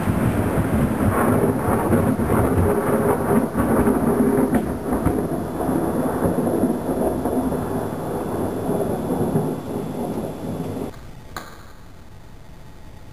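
Thunderstorm: steady heavy rain with low rolling thunder, dense and rumbling. Near the end it cuts off abruptly, leaving a faint hiss and a single click.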